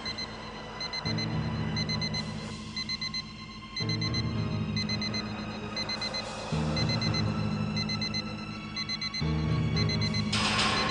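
Electronic alarm beeping in quick groups of short, high beeps that repeat steadily, over tense background music with low sustained tones.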